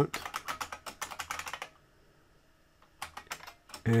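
Typing on a computer keyboard: a quick run of keystrokes for nearly two seconds, a pause of about a second, then a few more keystrokes near the end.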